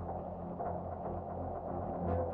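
Experimental industrial ambient music: a steady low drone under a dense, grainy mid-pitched texture with faint ticks.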